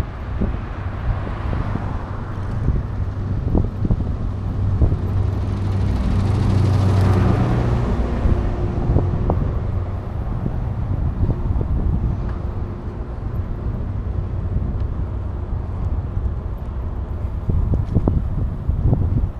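Wind buffeting a moving camera's microphone over road noise, with a motor vehicle passing by. The vehicle is loudest about seven seconds in.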